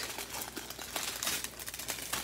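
Small plastic bags of diamond-painting drills and plastic wrapping crinkling as they are handled, a run of small irregular crackles.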